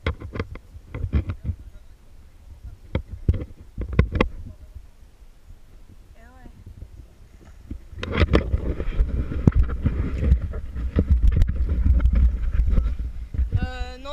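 Wind buffeting and water noise on an action camera's microphone aboard a moving personal watercraft at sea. There are gusty spikes in the first few seconds, then a louder, steadier rumble from about eight seconds in.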